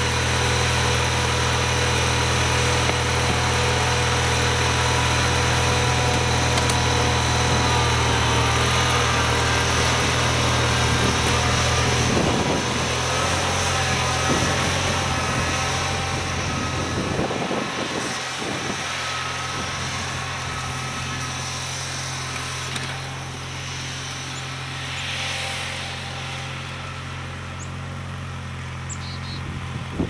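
Wheel Horse 520-H garden tractor engine running steadily after a cold start, left to warm up. It grows quieter in the second half as the tractor moves off.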